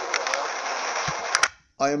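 Steady hiss with a faint voice underneath and a few sharp clicks, cutting off suddenly about one and a half seconds in; a man's voice then begins speaking.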